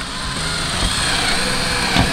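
Cordless drill running steadily, boring a hole through a wakesurf board.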